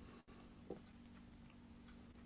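Near silence: faint room tone with a low steady hum and one small click just under a second in.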